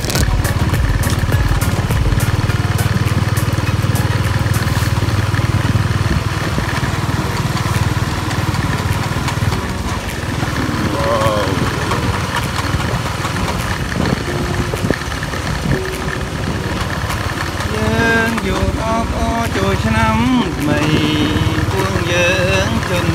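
A small vehicle's engine running steadily while moving, with a low hum. From about halfway in, people's voices join it.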